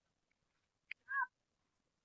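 A faint, sharp click just before a second in, followed at once by one short animal call with a slight bend in pitch.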